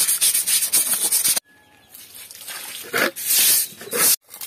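Stiff broom scrubbing wet, algae-coated concrete in rapid back-and-forth strokes. It stops abruptly about a second and a half in, and a few longer swishes of the broom over the wet floor come near the end.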